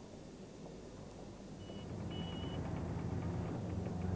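A backhoe loader's engine running with a low, steady rumble that grows louder about halfway through, with two short high beeps near the middle.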